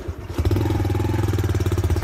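An engine running steadily with a low hum and a fast, even pulse, coming in loud about half a second in.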